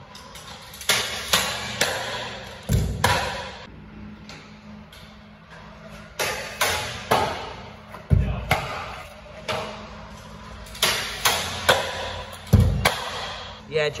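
Stunt scooter wheels and deck hitting concrete: three runs of sharp clacks, each ending in a heavy thud as the rider lands, about three, eight and twelve and a half seconds in.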